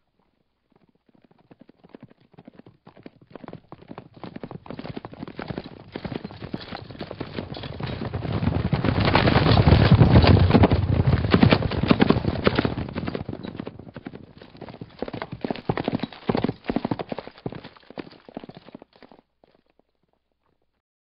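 Hoofbeats of a trotting horse coming closer, loudest about halfway through, then moving away, with a smaller second swell before fading out near the end.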